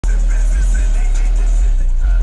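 Car audio subwoofers playing bass-heavy music at high volume, heard from outside the car: a deep, steady bass dominates, with a voice far quieter above it.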